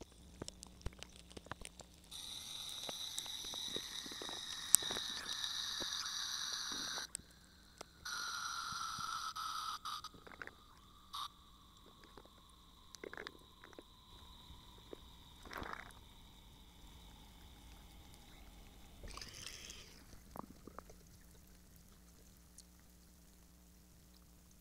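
Ice cubes crackling under pressure in a water-filled chamber: many scattered sharp clicks and pops throughout. Twice in the first ten seconds, from about two to seven seconds in and again from about eight to ten, a louder hiss sounds with a whine that slowly falls in pitch.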